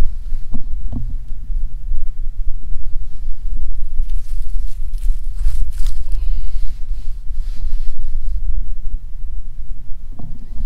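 Wind buffeting the microphone: a loud, gusty low rumble that rises and falls unevenly, with a few faint clicks of handling.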